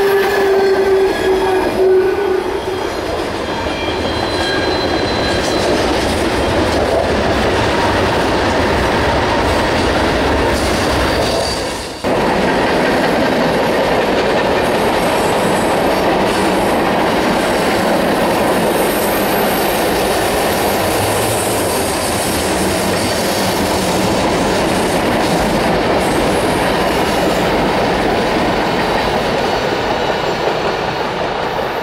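Freight train of tank cars rolling past, a steady heavy rumble of wheels on rail with clickety-clack over the joints. A locomotive horn blast tails off in the first two seconds.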